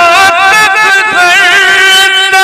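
A man singing a naat into a microphone, amplified, holding long notes with wavering, ornamented turns in pitch.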